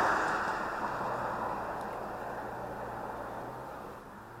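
A vehicle passing on the road, its tyre and road noise fading steadily as it drives away.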